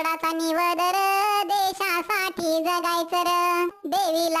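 A high-pitched, Talking Tom-style singing voice sings a Marathi patriotic song, holding notes and sliding between them, with a brief break near the end.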